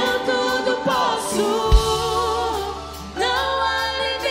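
Live worship band: male and female voices singing a chorus together in Portuguese over the band, with a steady low bass note. The voices dip briefly shortly before the end and then come back in together.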